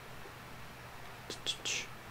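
Soft whispering, a few short hissy sounds about a second and a half in, over a low steady room hum.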